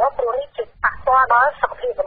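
Speech only: a narrator reading the news, with continuous talk and short pauses between phrases.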